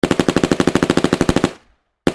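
A rapid burst of sharp, evenly spaced shots like automatic-weapon fire, about thirteen a second. It starts abruptly and dies away about one and a half seconds in.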